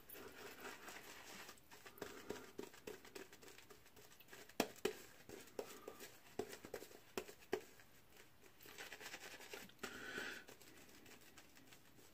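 Shaving brush working shaving-cream lather over the face and neck, a faint wet crackling made of many small irregular clicks, in spells with brief pauses.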